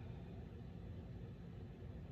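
Faint, steady room tone: a low hum and soft hiss with no distinct event.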